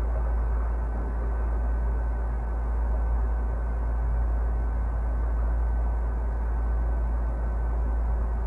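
A room air-conditioning unit running: a steady low rumble with an even hiss and a faint steady whine over it.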